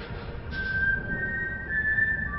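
Background music: a high, pure held note comes in about half a second in, and a second, slightly higher one joins near the end, over a low rumble.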